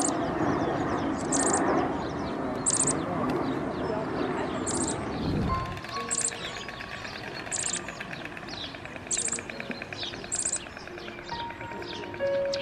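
A small bird repeats a short, high chirp about every second and a half, over a murmur of background voices. The voices cut off abruptly about halfway through, and soft music with long held notes comes in under the continuing chirps.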